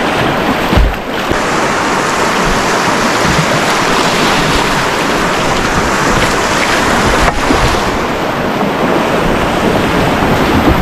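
Rushing whitewater of a shallow river rapid heard from a kayak running it, a loud, steady roar of water with low rumbling on the microphone.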